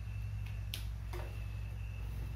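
Steady low hum with a faint high whine, and two sharp clicks about a second in, under half a second apart.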